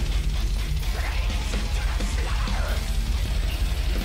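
Fast death metal song with a drum cover on an electronic kit played along to it; the backing track is louder than the drums, and the kick drum plays eighth-note triplets.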